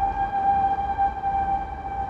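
A single steady pitched tone, like a distant horn or whistle, holding one pitch without rising or falling, over a faint low rumble.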